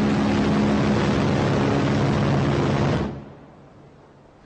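Goalkeeper CIWS's GAU-8/A Avenger 30 mm seven-barrel rotary cannon firing one long, steady burst that stops about three seconds in and then fades away.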